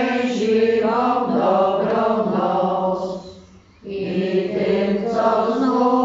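Church congregation singing together, many voices on one tune, with a short pause between lines a little past halfway.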